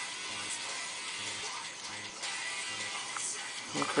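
Quiet background music with a steady, repeating bass line.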